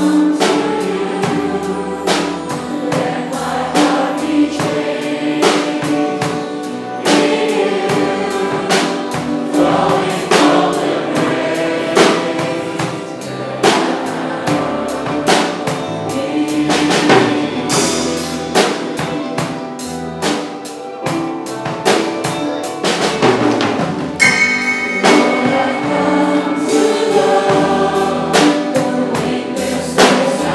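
Many voices singing a worship song together with a live band, a drum kit keeping a steady beat.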